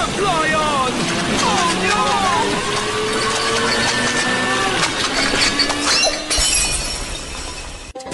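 Cartoon soundtrack of liquid hissing out of a spray nozzle under pressure. Over it come short high squealing glides and a slowly rising tone, and the spray sound changes character a little after six seconds in.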